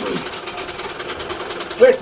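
Sewing machine running steadily, a fast, even clatter with a hum underneath; a man's voice cuts in near the end.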